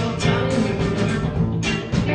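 Rock band playing live: electric guitars, bass and drum kit in a concert recording.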